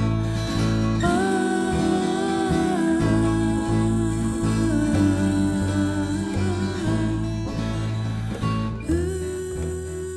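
Folk trio playing an instrumental passage: plucked double bass notes and acoustic guitar, with a held melody line above that slides between pitches.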